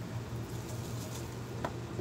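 Quiet kitchen with a steady low hum and faint handling noises, with one small click near the end.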